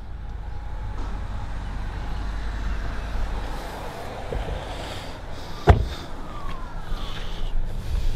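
The rear door of a 2012 Audi A4 sedan is shut once with a single sharp thud a little after halfway, over a steady low background rumble.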